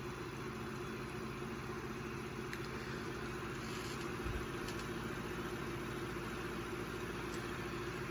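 Revox A77 MkIV reel-to-reel tape recorder in fast rewind: a steady, quiet hum from the spooling motors and the tape whirring between the reels, with no rattles.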